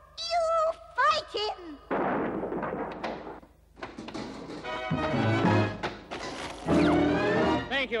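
Cartoon soundtrack: high, squeaky character exclamations in the first two seconds, a rushing noise effect, then a short, loud music cue that fills the rest.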